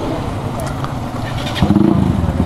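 Motorcycle engines running as the group pulls away, with a louder steady engine note coming in about one and a half seconds in.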